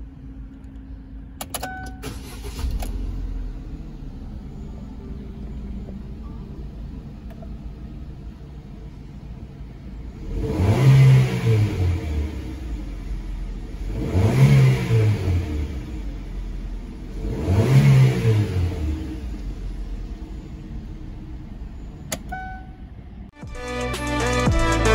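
A small car's four-cylinder petrol engine is started with the key, cranking briefly and catching, then idles steadily. It is revved three times in park, each rev rising and falling back to idle, and is switched off shortly before the end.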